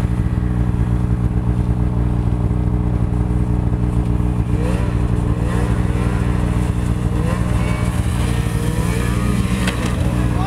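A snowmobile engine running steadily close by, with the engine of a Ski-Doo GTX Limited snowmobile rising in pitch again and again from about four and a half seconds in as it speeds up toward a jump.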